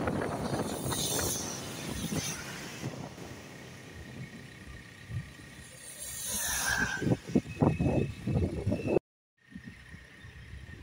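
Road and tyre noise from a vehicle driving on a wet road, with a rising hiss of spray as an oncoming truck passes about two-thirds of the way in, followed by a couple of seconds of low, uneven thumping rumble. The sound cuts out abruptly near the end and comes back quieter.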